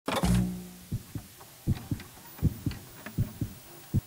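Intro sound effect: a loud opening hit with a brief low tone, then a heartbeat-like pulse of low thumps in lub-dub pairs, a pair about every three-quarters of a second.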